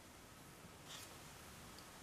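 Near silence: room tone with the faint handling of metal knitting needles and yarn, and one small soft tick about a second in.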